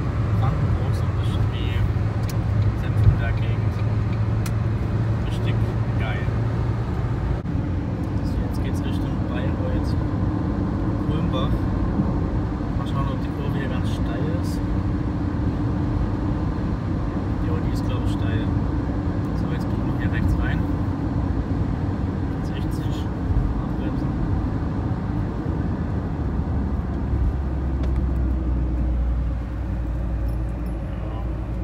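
Steady road and engine noise inside a car's cabin while driving at motorway speed: a continuous rumble with a low drone that shifts in pitch about a quarter of the way in and again near the end.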